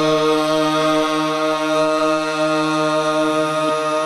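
Harmonium and a voice holding one long steady note together in a qawwali, the pitch shifting slightly near the end.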